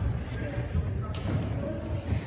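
Voices in a large gymnasium over irregular low thumps, with a brief sharp noise about a second in.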